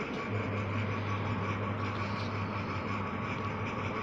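A steady low machine hum with a faint even noise over it, unchanging throughout.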